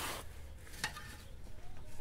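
Faint scraping and rustling of hands and tools working on a car's rear suspension, with one light metallic click a little under a second in.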